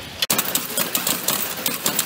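Small metal-forming machine running with a rapid, uneven clatter of metallic clicks and knocks, which cuts in abruptly just after the start.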